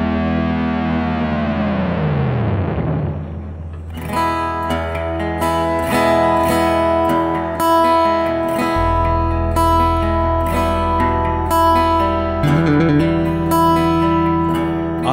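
A small live band of guitars playing an instrumental passage. A held chord slides down in pitch and fades over the first three seconds, then the guitars start a steady, rhythmic plucked pattern about four seconds in, and a low bass note joins near nine seconds.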